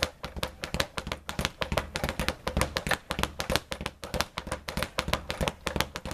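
Leather speed bag being punched in the 'linking' technique, rebounding off its wooden rebound board in a fast, continuous, even run of knocks.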